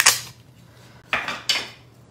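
A roll of tape in a plastic holder being handled and strips pulled off it: three short rasping bursts, one right at the start and two about a second in.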